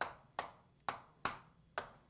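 Five sharp taps, unevenly spaced and each with a brief ring-out, from writing on a board as an equation is put up.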